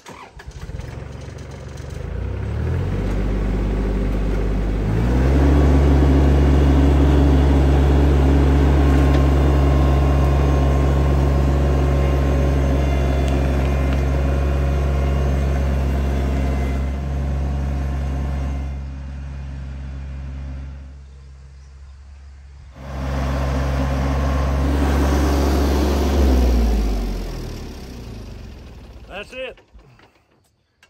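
Kubota compact tractor's diesel engine coming up to speed and running steadily under load as it pulls a single-bottom moldboard plow through hard, long-unplowed sod. The engine sound drops for a few seconds midway, comes back, then falls away near the end.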